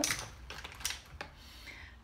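A few scattered light clicks and taps, one about a second in, over a faint room hum.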